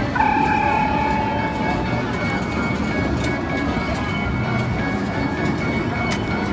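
Arcade ambience: electronic game music and a held electronic tone starting just after the start, over a steady din of background voices and machine noise.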